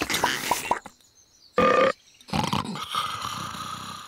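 Cartoon gnome gulping down a jar of pickles: noisy swallowing, then a short loud gulp after a pause, then a long burp that fades out.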